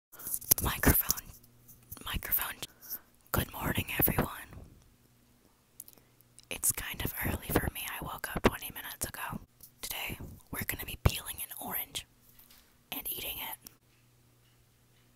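Close-up whispering straight into an earbud cable's inline microphone, in breathy phrases with short pauses, over a faint steady low hum.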